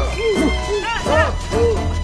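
Several short cries in a row, each rising then falling in pitch, at a few different pitches, over background music.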